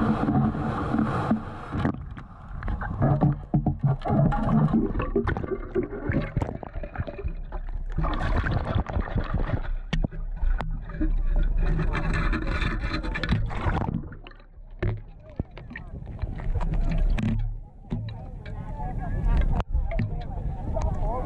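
Water sloshing and sand and gravel rattling in the perforated metal basket of a long-handled sand scoop as it is shaken to sift out a target. Many sharp clicks of stones against the metal run all through, with a couple of quieter moments near the end.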